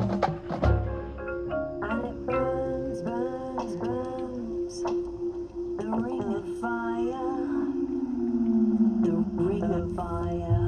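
Marching band show music in a soft passage: a held note with a melodic lead line above it that bends up and down in pitch, a few low thumps in the first second, and a long falling glide in the second half.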